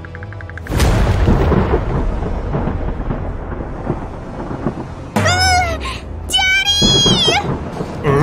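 A thunderclap breaks in about a second in and rumbles on for several seconds, followed near the end by two short, frightened whimpering cries.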